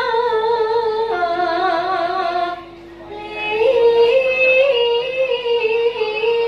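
Javanese sinden (female gamelan vocalist) singing long held notes with a wavering vibrato, over a karawitan gamelan ensemble. The voice breaks off briefly about two and a half seconds in, then comes back with a higher, more ornamented phrase.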